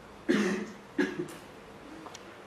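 A person coughing twice, the first cough a little longer, about two-thirds of a second apart.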